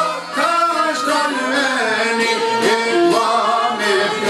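Albanian folk music: a man singing a wavering melody, accompanied by çifteli (two-stringed long-necked lute) and violin.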